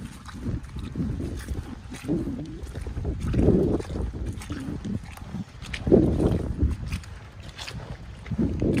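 Snow boots squelching and sloshing through wet mud and puddles, step after step, with sucking and splashing noises. The steps come unevenly, with the heaviest splashes near the middle and again about six seconds in.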